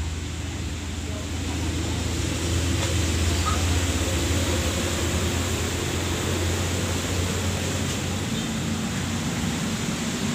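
A diesel engine idling with a steady low hum, under a constant wash of noise; it swells slightly a couple of seconds in.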